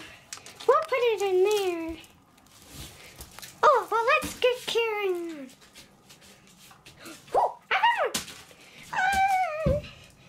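A child's voice making about four short wordless sounds that glide up and down in pitch, with quiet gaps between them.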